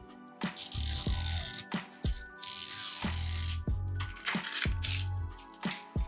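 Plastic wrapper being peeled and torn off a Mini Brands capsule ball, crinkling in two long stretches with shorter crackles after, over background music.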